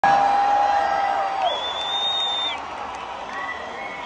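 Large concert crowd cheering and shouting, loudest at the start and easing off, with long high held tones sounding one after another above the noise.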